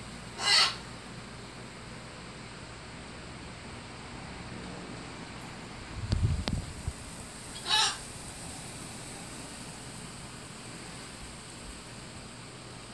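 Two short, harsh bird calls about seven seconds apart, with a low gust of wind buffeting the microphone between them.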